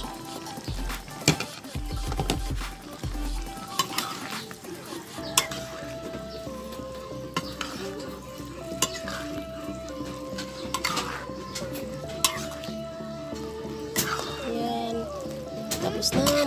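A metal spoon stirring diced sponge gourd (sikwa) cooking in a pan. The spoon scrapes and knocks against the pan every second or two, over faint background music.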